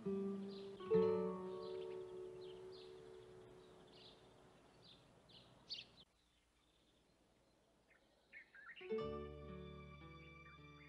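Soft acoustic guitar background music, a chord ringing out and slowly fading, with bird chirps repeating about twice a second over it. After a brief near-silent gap a few more chirps come, and the guitar starts again about nine seconds in.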